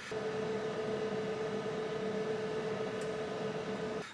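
Cooling fan of an OUPES 1200 W LiFePO4 portable power station running: a steady whir with a constant hum-like tone, like a loud computer fan but not loud.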